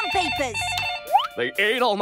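Telephone ringing with a rapid two-tone warbling trill for about the first second and a half, overlapping with voices talking on the phone.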